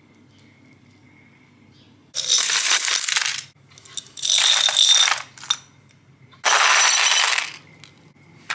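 Small glass mosaic tiles poured from a glass jar into a plastic tub, clattering in three pours of about a second each.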